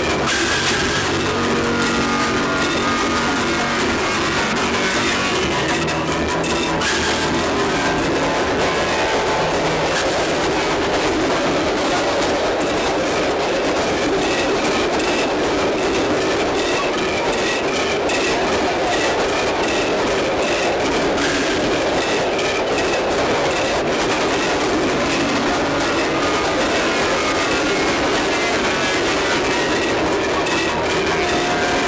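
A passenger train running along the rails: a steady, loud rumble and rattle of the carriages that does not let up, with music playing over it.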